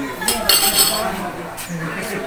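Stainless-steel chafing dishes and serving spoons clinking as food is served, with one bright ringing clink about half a second in and a few lighter knocks.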